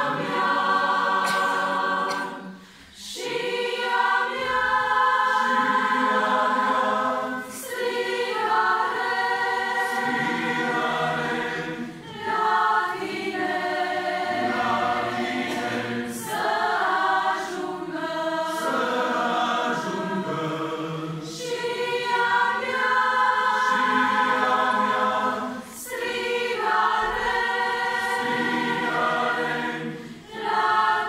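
Mixed choir of women and men singing together in sustained phrases of about four seconds, each followed by a brief pause for breath.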